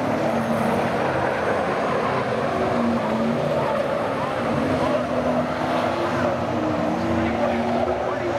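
Pack of V8 saloon race cars running hard around a dirt speedway oval, a continuous engine din with individual engine notes rising and falling as the cars go through the turn.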